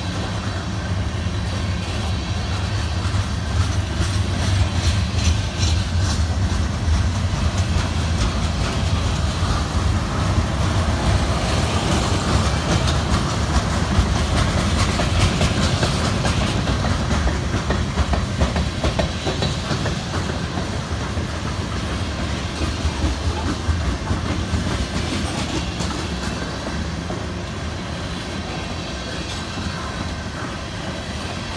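Freight train cars (tank cars and a lumber-loaded flatcar) rolling past close by: steel wheels clicking rapidly over the rail joints over a steady rumble. It grows louder a few seconds in and eases off toward the end.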